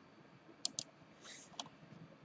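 Faint computer mouse clicks: two quick clicks in a row a little past half a second in, then a softer one later, over quiet room tone.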